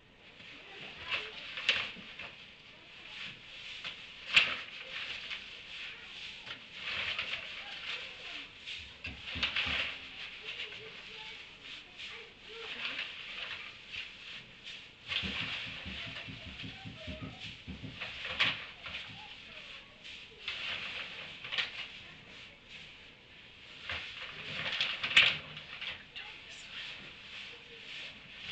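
Donkeys pulling and chewing hay at a hay feeder: an uneven rustling and crunching with scattered sharp crackles, and short stretches of low rapid munching.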